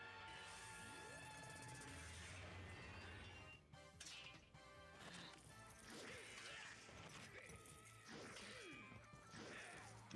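Very faint TV fight-scene soundtrack: background music with crash and impact sound effects.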